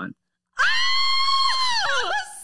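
A woman's high-pitched scream of excitement, starting about half a second in, held at one pitch for over a second and then dropping away.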